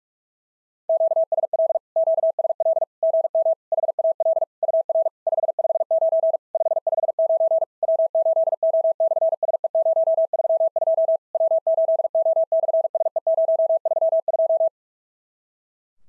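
Machine-sent Morse code at 45 words per minute: one steady mid-pitched tone keyed on and off in rapid dits and dahs, starting about a second in and stopping shortly before the end. It sends the reply in a SOTA summit-to-summit ham radio contact: a 559 signal report and the summit reference W8O/SE-032.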